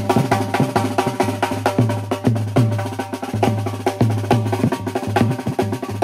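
Banjo-band drumming: a large bass drum struck with a beater among fast, sharp percussion strokes, in a steady driving rhythm over a steady low tone.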